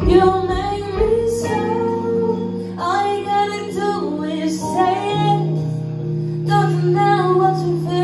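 Live band music: a woman singing long, bending notes without clear words over electric guitar, keyboard, bass and drums.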